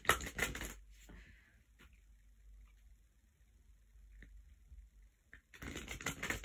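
Faint handling noise: a short burst of rustling in the first second, then soft scattered clicks and rustles, with a person's voice starting up near the end.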